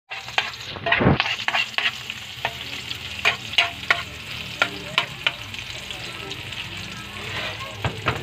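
Garlic and chopped onions sizzling in a steel frying pan while a spatula stirs them, with frequent sharp clicks and scrapes of the utensil on the pan. The sizzling and stirring are loudest about a second in.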